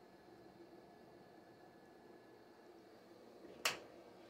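Quiet room tone with one sharp, short click a little past three and a half seconds in.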